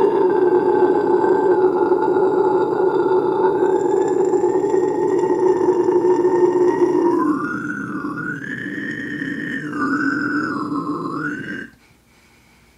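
A man's inhaled low scream, the vocal technique used in metal screaming, held in one long unbroken breath. About seven seconds in it drops in level and the vowel shifts several times before it cuts off suddenly near the end.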